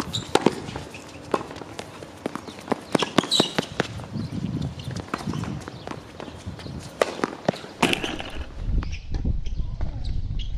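Tennis rally on a hard court: racket strikes and ball bounces heard as a run of sharp, irregular pops, with shoe steps between them. Near the end the pops stop and a low rumble takes over.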